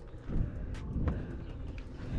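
Low, uneven rumble of wind buffeting the camera microphone, with faint scattered clicks.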